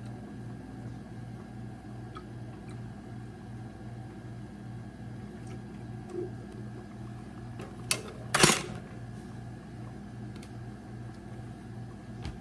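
Reed diffuser base trickling slowly from an amber bottle into a plastic squeeze bottle, over a steady low hum that pulses a few times a second. Two sharp knocks come about eight seconds in; the second is the loudest sound.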